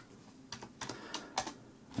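Keys pressed on a computer keyboard: a handful of quiet, separate keystrokes, typing in a font size of 28.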